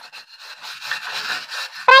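Stainless-steel wire scouring pad scrubbing the grimy underside of a frying pan, a coarse scraping that rises and falls with each stroke.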